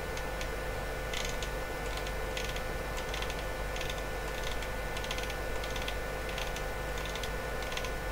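Short runs of quick, light clicks from the controls being worked to scroll a logic analyzer's waveform display forward, over a steady electrical hum with a faint constant whine.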